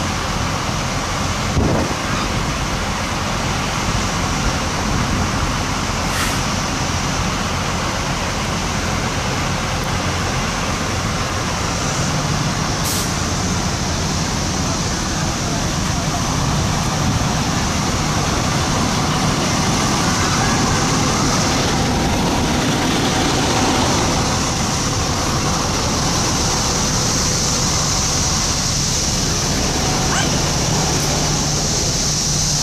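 Fire apparatus diesel engines idling: a steady low engine drone, with a few light clicks and indistinct voices over it.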